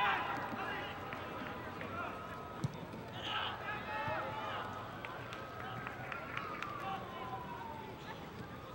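Distant, indistinct voices of players and spectators calling out across an open soccer stadium during play. Near the end, a long faint tone slides down in pitch.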